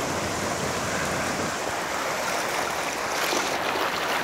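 Flash-flood water rushing through a storm wash: a steady, churning rush of fast muddy water, growing brighter and hissier about three seconds in.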